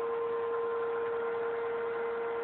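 Vacuum cleaner running steadily: a constant motor hum over an even hiss of air.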